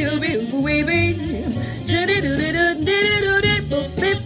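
A woman scat singing a fast jazz line in nonsense syllables, her pitch sliding up and down in quick runs, over a jazz backing with low bass notes underneath.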